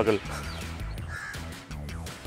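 A bird's short call about a second in, over a low, steady outdoor background.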